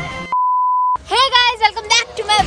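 A single high-pitched electronic beep, one steady pure tone lasting a little over half a second, with all other sound cut out beneath it, as in an edited-in bleep; a woman starts talking right after it.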